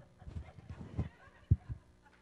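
A man's shoes stomping on a stage floor as he dances: a few low thumps, the loudest about a second and a half in, followed closely by another.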